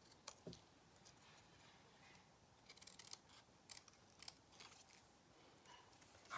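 Faint, sparse snips of small craft scissors trimming a die-cut cardstock palm tree: a couple of short clicks about half a second in, then a cluster of several more in the middle of the stretch, otherwise near silence.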